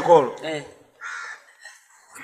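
A man's voice for the first moment, then a crow caws once, about a second in.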